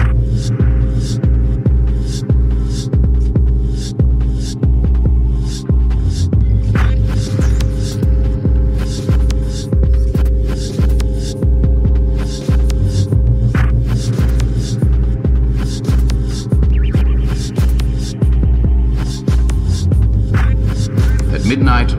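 Dubstep instrumental: a heavy sub-bass pulsing about twice a second under a sustained low synth drone, with regular hi-hat-like ticks on top.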